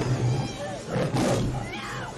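Horror film sound effects: a ghostly creature growling and roaring over a dense rushing noise, with a steady low drone underneath.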